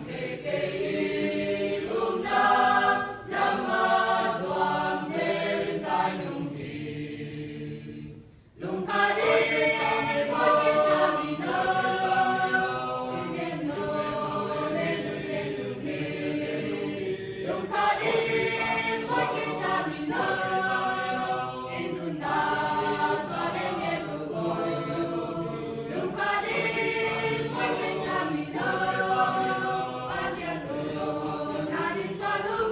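Mixed-voice church choir singing a hymn in sustained held chords, with a short pause between phrases about eight seconds in.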